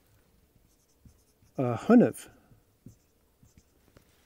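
Whiteboard marker writing a word on a whiteboard: faint, short scratchy strokes. A man's drawn-out 'uh' comes about halfway through.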